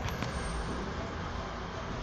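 An older, unmodernized Mitsubishi elevator running, heard from inside the cab: a steady low mechanical rumble, with a faint click just after the start.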